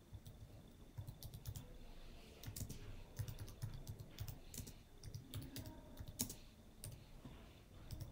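Faint computer keyboard typing: an irregular run of light key clicks as a short sentence is typed out.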